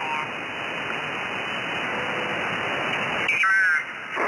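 Hiss and static from an Anan 8000DLE software-defined radio receiving the 20 m amateur band in upper sideband while it is tuned across the band. Near the end a brief, squeaky, garbled voice comes through, a sideband signal heard off-tune.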